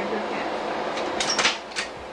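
Quiet, indistinct talk over a steady background hiss, with a few short hissing 's'-like sounds about a second and a half in.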